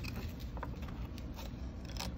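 Foil seal being peeled back from a plastic tub, with light crinkling and a few small ticks.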